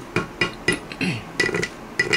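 A deck of tarot cards being knocked on its edge against a stone board and shuffled: a quick, irregular series of sharp taps and card clacks.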